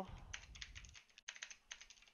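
Computer keyboard typing: a quick run of faint keystrokes in two bursts with a short pause about a second in.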